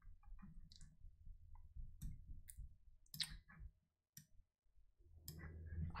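Faint, scattered clicks of a computer mouse, about half a dozen spread over a few seconds, over a low room hum.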